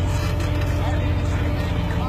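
Rock-crawling Jeep Wrangler's engine running at low revs as it creeps over boulders: a steady, low drone.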